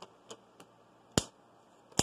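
Rubber band being stretched and wrapped around a plastic water bottle's cap: a few faint clicks, then one sharp snap a little over a second in.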